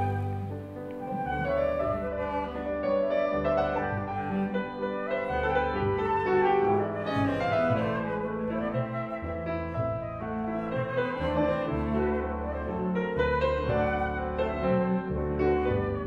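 A small chamber-jazz ensemble playing continuously: piano with cello and flute lines over sustained low bass notes.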